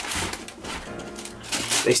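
Shoe-box tissue paper rustling and crinkling as a sneaker is pulled out of it, loudest in a short burst near the end, over quiet background music.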